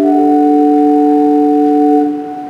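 Organ playing slow, sustained chords: the notes shift to a new chord just after the start and hold steady through the rest.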